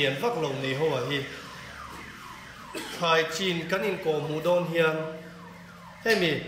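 A man speaking into a microphone, lecturing, with a short pause in the middle.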